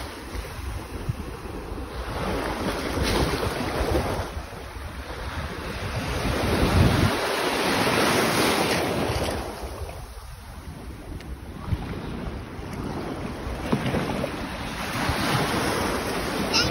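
Wind buffeting the microphone over a steady rush of noise that swells and fades every few seconds.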